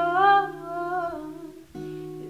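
Acoustic guitar chord ringing under a woman's wordless sung note that rises and then falls over about a second and a half; the guitar is struck again near the end.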